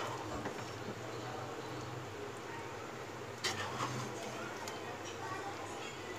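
Spoon stirring and turning cooked rice into chicken masala in a non-stick pan, with a few sharp clinks of the spoon against the pan, the loudest about halfway through. A low steady hum runs underneath.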